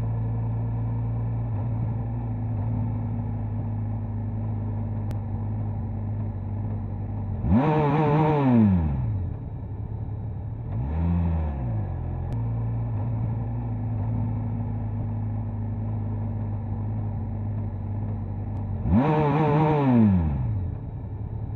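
Motorcycle engine running steadily at cruising speed, heard from the rider's dashcam. It revs sharply twice, its pitch rising and falling over about a second, once about seven seconds in and again near the end, with a smaller rev in between.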